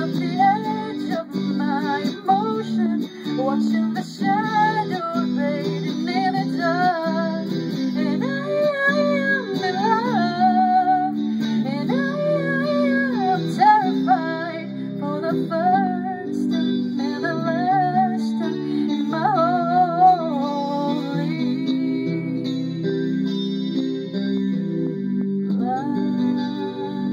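A woman singing a slow, gliding melody over sustained electric guitar chords. The voice drops out about three quarters of the way through, leaving the guitar ringing on.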